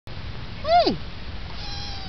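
Munchkin kitten meowing: one loud, short meow about three-quarters of a second in that rises briefly then drops steeply in pitch, then a softer, longer meow near the end that slowly falls.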